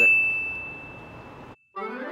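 A high, bell-like ding from an on-screen subscribe-button animation rings on one steady note and fades, then cuts off abruptly. After a moment of silence, music starts near the end with rising notes.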